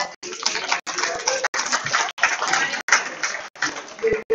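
Garbled, broken-up live-stream audio: a voice and room sound smeared into noise and cut by brief dropouts about every two-thirds of a second, the sign of a faulty audio feed.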